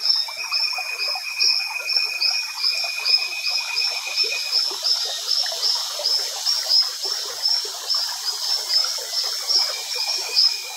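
Rainforest frogs calling: a short high call repeats about three times a second, over a dense chorus of other calls. A steady high trill runs alongside and stops a little before halfway.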